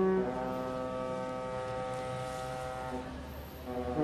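Ship's horn sounding a slow tune of long, deep chord notes. The notes change about a quarter-second in, then again and briefly fade near the end.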